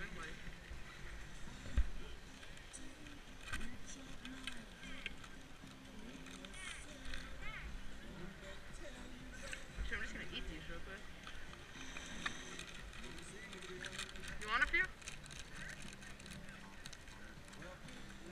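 Unintelligible chatter of nearby people, loudest about fourteen seconds in, over a low wind rumble, with scattered short clicks and the rustle of a foil snack wrapper being handled.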